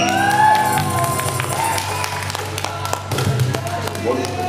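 A live acoustic band with guitars and a cajon ends a song: the last chord rings out while a voice calls out over it, and scattered claps follow.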